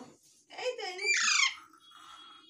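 A young Alexandrine parakeet calls once, starting about half a second in: a short warbling call that breaks into a high squeal falling in pitch.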